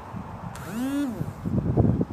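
Wind buffeting the microphone in loud, ragged gusts from about one and a half seconds in. Before that comes one short pitched sound that rises and then falls, lasting about half a second.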